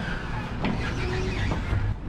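Road traffic on a city street, a steady low rumble of cars.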